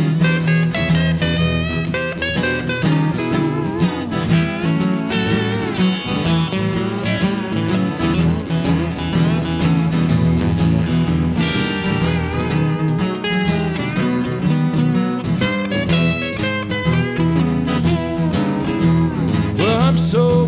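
Instrumental break of a live country honky-tonk song: a pedal steel guitar plays sliding, gliding lines over strummed acoustic guitars.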